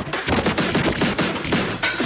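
Vinyl record scratched on a turntable with fast crossfader cuts, chopping the sound into rapid, choppy bursts several times a second.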